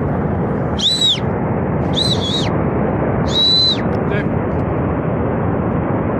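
Steady roar of a glacier-burst flood and debris flow rushing down the gorge. Three short, shrill whistles cut through it in the first four seconds, each ending in a falling pitch.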